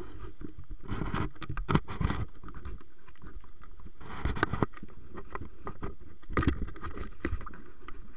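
Handling noise from a camera carried by a hiker on the move: three bursts of rustling and knocking, about a second in, about four seconds in and near the end, over a steady low background noise.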